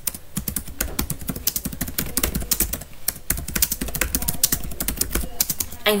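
Typing on a computer keyboard: a quick, irregular run of key clicks, several a second.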